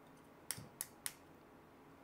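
Three faint, sharp clicks of fingers pressing and turning a 3D-printed wood-PLA Benchy, about a quarter to a third of a second apart in the first half. The print is rigid and does not flex under the squeeze.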